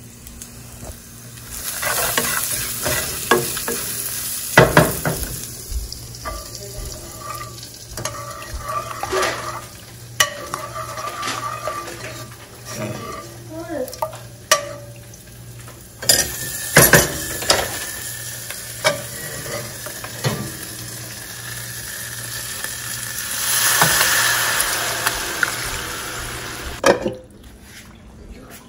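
A tempering of shallots and dried red chillies sizzling in hot oil in a pan, stirred with a wooden spatula; utensils clack against the pan now and then. Near the end a louder swell of sizzling comes as cooked dal is poured into the hot tempering for sambar.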